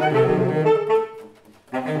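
Saxophone trio of alto, tenor and baritone saxophones playing in harmony. A phrase ends about a second in, there is a short breath pause, and the next phrase begins near the end.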